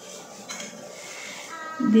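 A wire whisk in a glass mixing bowl, faintly clinking as it begins to beat an egg into mashed banana batter.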